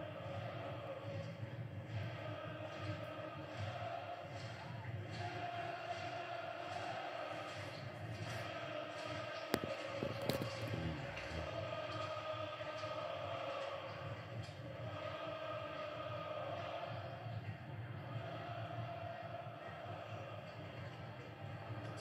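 Football stadium crowd heard over a match broadcast: a steady mass of voices with long, wavering sung chants. There are a couple of sharp clicks about ten seconds in.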